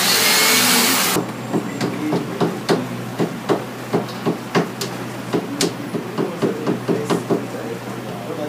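A power drill runs in one short burst of about a second, then a series of irregular sharp knocks and taps, two or three a second, as parts are worked by hand.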